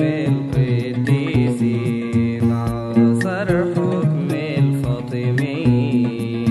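Arabic Christian hymn (tarnima) music: a melody with wavering, ornamented turns over a bass line, with a steady percussion beat.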